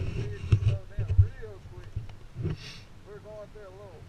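Indistinct talking in a fairly high voice, with heavy low thumps on the microphone in the first second or so and a short hiss a little past the middle.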